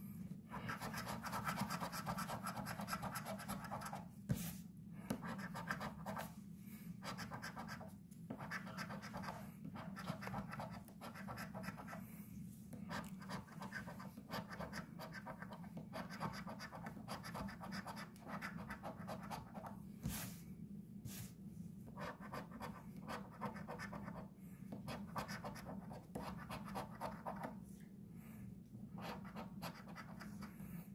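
A coin scratching the coating off a paper lottery scratch-off ticket in quick back-and-forth strokes, with several short pauses between spots.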